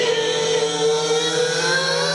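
Live band music: one long held note with slow slight bends in pitch, over a low steady drone.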